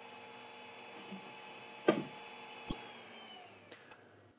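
Ender 3 3D printer's power supply and cooling fans humming steadily. A sharp click about two seconds in as the power is switched off, then a smaller knock. The hum then falls in pitch and dies away as the fans spin down.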